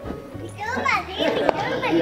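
Several children talking and calling out over one another, growing busier after about half a second.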